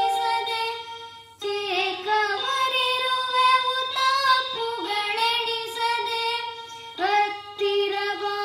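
A boy singing a Kannada devotional song to Ganapati, with a small toy electronic keyboard holding notes under his voice. The singing breaks briefly about a second in, then carries on.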